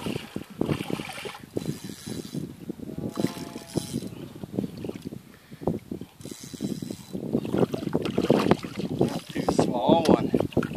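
Wind buffeting the microphone over water lapping against shoreline rocks, with irregular small knocks and rustles throughout.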